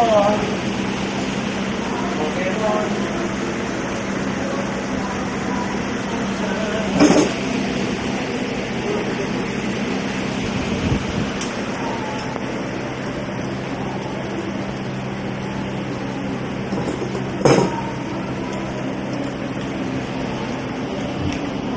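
Steady low machine hum with two short sharp knocks, one about seven seconds in and one near the end.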